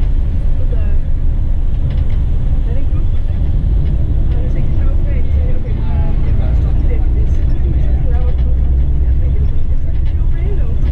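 Steady low engine and road rumble of a moving coach heard from inside its cabin, with faint indistinct voices of passengers talking.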